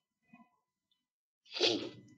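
A person sneezes once, sharply, about one and a half seconds in.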